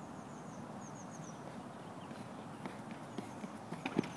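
A pole vaulter's running footsteps on the rubber track during the run-up, growing louder in the second half and ending in a sharp knock just before the take-off.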